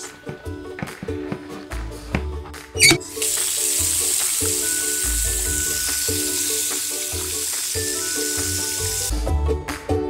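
Running tap water: a steady hiss lasting about six seconds, starting about three seconds in, just after a short rising whistle. Background music plays throughout.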